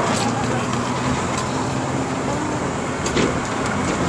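Steady din of road traffic with a low hum underneath and faint voices of people nearby mixed in.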